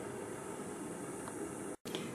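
Faint, steady background hiss of room tone, with no distinct event, cut off briefly by an edit near the end.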